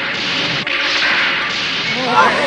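Cartoon sound effect: a steady hiss-like noise with a sharp click a little over half a second in.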